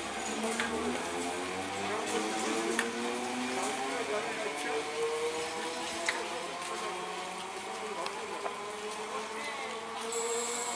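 EMU commuter train pulling into a station, its electric traction motors whining in several tones that fall slowly in pitch as it slows, with a few sharp clicks.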